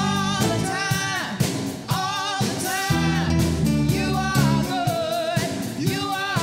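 A woman singing a solo into a microphone, some held notes wavering with vibrato, over instrumental accompaniment with low sustained bass notes.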